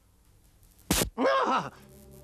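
Cartoon soundtrack: a sharp click about halfway through, then a short groan-like vocal grunt that rises and falls in pitch. Near the end a steady electrical hum of several tones starts up from the computer console as it runs.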